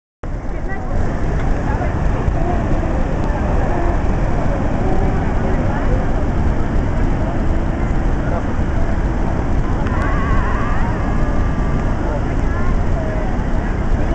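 Steady rush of a large waterfall, Niagara's American Falls, filling the sound, with people's voices talking faintly through it.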